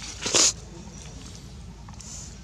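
Baby long-tailed macaque giving one short, loud cry about half a second in.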